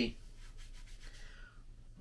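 Quiet rubbing and rustling of a cloth being handled and folded in the hands.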